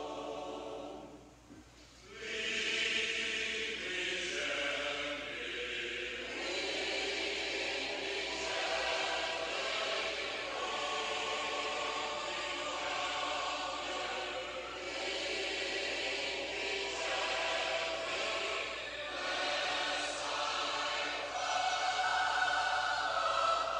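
A choir singing a hymn a cappella, in held chords; the singing drops away briefly about a second in and resumes about two seconds in.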